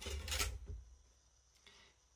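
Brief handling noise, a rustle with a low bump, as a metal kitchen whisk is picked up, then quiet.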